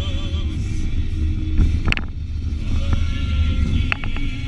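Steady low road and engine rumble inside a moving car's cabin, with a sharp click about two seconds in and another near the end.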